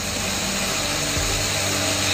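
Steady hiss with a low hum underneath: the background noise of a phone video recording, with no speech.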